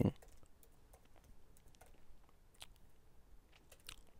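Faint typing on a computer keyboard: a scatter of light, irregular keystroke clicks as a few words are typed.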